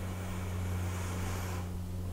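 Room tone: a steady low hum with a faint hiss over it.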